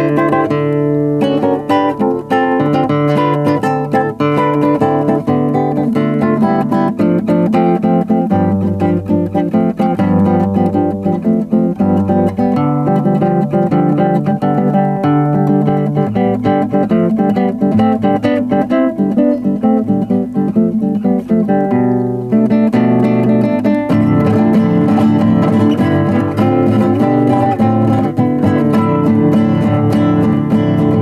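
Nylon-string classical guitar played fingerstyle: a string of triad chords moving through the scale over a held open-string bass pedal. The bass note changes a few times, dropping lower around the middle.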